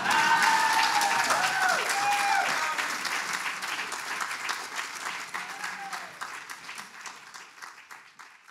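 Audience applauding, with a few cheering voices in the first two or three seconds. The clapping fades out gradually to near silence.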